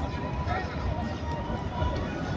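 Outdoor crowd ambience: indistinct voices of people nearby over a steady low rumble, with a faint steady tone in the background.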